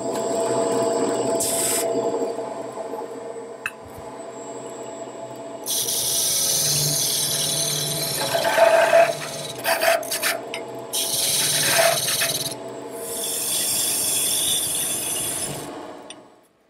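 Wood lathe running with a steady motor hum while a turning chisel cuts the spinning wooden table-leg blank, giving a hissing, scraping sound in several passes: a short one early, then longer ones from about six seconds in, with a quieter stretch between.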